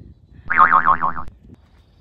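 Cartoon-style 'boing' sound effect: a single pitched tone, less than a second long, whose pitch wobbles quickly up and down, starting about half a second in and cutting off sharply.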